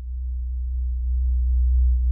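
Low synthesizer drone, one steady deep tone, swelling gradually louder, with faint higher tones creeping in as a song's intro builds.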